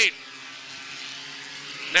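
Engines of a pack of Bomber-class compact race cars running at speed, heard faintly as a steady drone beneath the announcer's pause.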